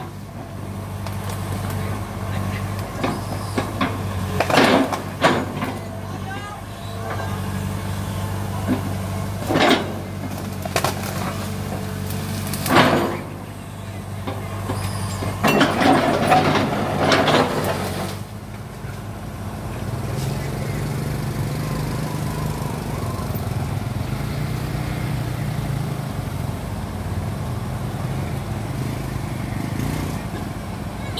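Kobelco Yutani SK045 mini excavator's diesel engine running steadily while the bucket breaks up trees and brush, with several short bursts of crashing and cracking in the first half. About two-thirds of the way in, the engine note rises and runs harder under load.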